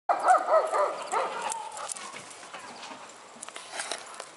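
A puppy giving a quick run of short, high-pitched barks in the first two seconds, the last one drawn out, then fading.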